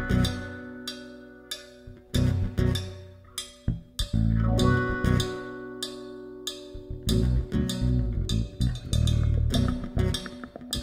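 Acoustic band of two acoustic guitars, electric bass and percussion starting a song. Full chords are struck and left to ring out about every two seconds, with sharp percussion taps between them. From about seven seconds in, the band settles into a busier, steadier groove.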